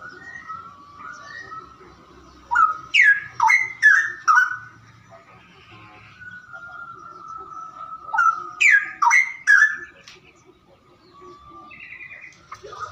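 Caged songbird singing: two bursts of loud, quick, downward-sweeping whistled notes, five a little over two seconds in and four about eight seconds in, with softer whistles and chirps between them.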